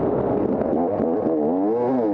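250-class enduro dirt bike engine under load, its note rising and falling with the throttle: it climbs steadily through the second second, then drops sharply as the rider backs off.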